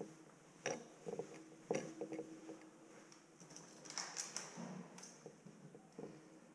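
Faint knocks and clicks as a bicycle is handled and moved indoors, the loudest just under two seconds in, with a short rustle about four seconds in.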